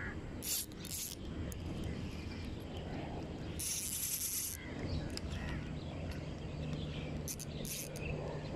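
Spinning reel on an ultralight rod sounding in short whirring bursts, the longest lasting about a second around the middle, as line runs through it. A low steady hum sits under the second half.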